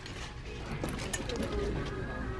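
Leather handbags being handled on a store display, their metal hardware (hang tag, charm, chain) and plastic price tags giving a few light clicks and rattles over a low store background.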